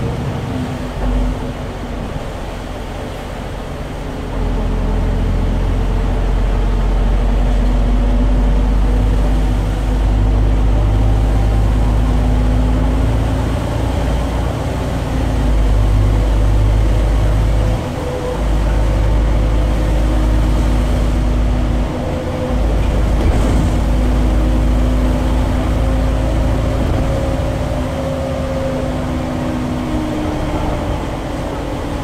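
Inside a SOR NB12 city bus under way: its Iveco Tector diesel engine and ZF automatic gearbox running with a steady low drone and a faint whine. The drone steps up about four seconds in and dips briefly twice later on.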